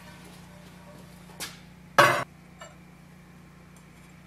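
Glazed stoneware mug set down on a hard surface: a light clink about a second and a half in, then one loud short clunk about two seconds in, and a faint tick after it.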